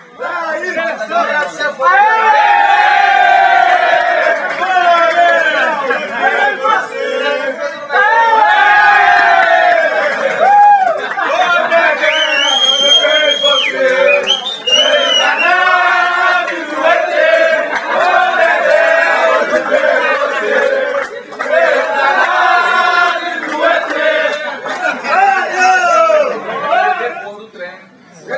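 A group of men chanting, shouting and cheering together, loud and unbroken, their voices overlapping, with one high held note about halfway through.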